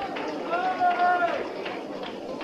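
Voices calling out in a crowded hall between songs, one of them a long drawn-out shout starting about half a second in, over crowd noise.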